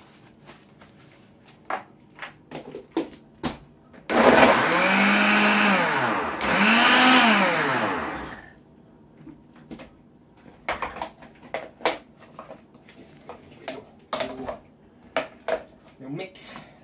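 Bosch countertop blender pulsed twice on fruit for a smoothie: two motor bursts of about two seconds each, a few seconds in, the pitch rising and then falling in each. Scattered light clicks and knocks come before and after.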